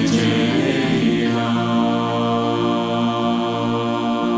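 Mixed a cappella choir, men and women singing in several parts and holding a sustained chord, with small moves in the lower voices.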